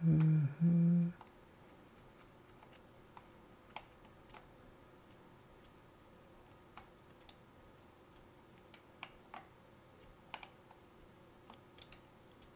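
A brief murmured voice sound in the first second, then about a dozen faint, isolated clicks from a computer keyboard, scattered irregularly over the rest.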